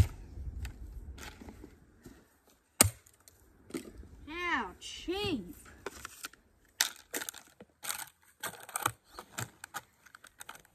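Shards of a broken black plastic plant pot being smashed, first with a golf club and then under rubber boots. Two sharp hits come at the start and about three seconds in, and a cluster of crunching and crackling comes in the last few seconds. Two short rising-and-falling vocal sounds come in the middle, around four and five seconds in.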